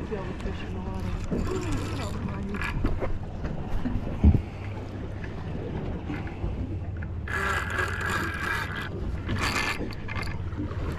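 Low steady hum of an offshore fishing boat drifting with its motor running, while a mahi is fought on a spinning rod alongside. A sharp thump about four seconds in, and two bursts of hiss near the end.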